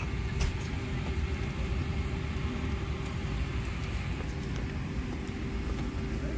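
Steady low rumble and hum of an airliner cabin on the ground during de-icing, with one steady mid-pitched tone running through it. A faint click comes about half a second in.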